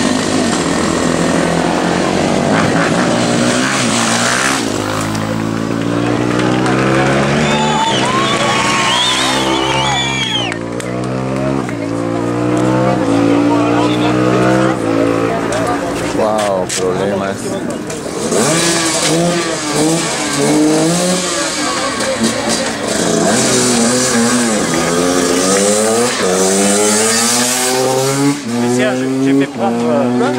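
Several enduro motorcycle engines idling and revving hard, their pitch climbing and dropping again and again as bikes pull away one after another.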